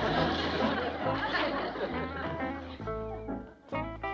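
Bluegrass-style plucked-string music, a short banjo and guitar cue over a bass line marking the change of scene.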